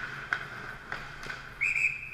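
A few sharp clacks of hockey sticks and puck on the ice, then a referee's whistle blown in one short, loud, steady blast near the end, stopping play, with a faint echo of the rink after it.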